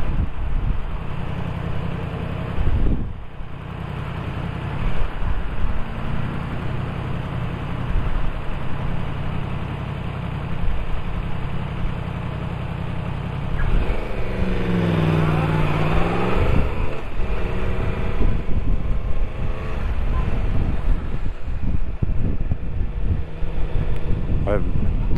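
Motorcycle engine running at a standstill amid traffic, then rising and falling in pitch about two-thirds of the way through as the bike pulls away and accelerates.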